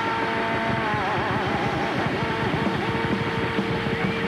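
Live rock band playing: an electric guitar holds long notes, bending and wavering about a second in, over busy drums, bass and keyboard.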